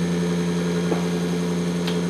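Bedini-style SSG monopole pulse motor running steadily: a constant hum, one strong low tone with a few fainter overtones above it.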